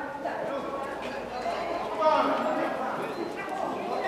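Several people talking indistinctly in a large echoing hall, with no clear ball strike.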